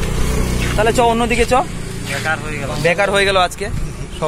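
A motor vehicle's engine hum from a passing car on the road, low and steady, fading out about two seconds in, under people talking.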